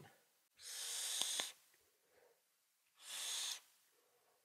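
A draw on an e-cigarette's rebuildable dripping atomizer fitted with dual Clapton coils. It gives about a second of hissing airflow with two faint clicks. About three seconds in comes a shorter breathy hiss as the vapour is exhaled.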